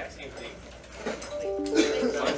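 A computer notification chime: a short run of notes stepping down in pitch about one and a half seconds in, as a new-email alert pops up on the Windows desktop. Faint background chatter underneath.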